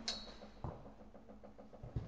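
A football knocking on an indoor artificial-turf pitch: a thud about a third of the way in and a sharp kick of the ball by a player's foot at the end, with faint patter between them.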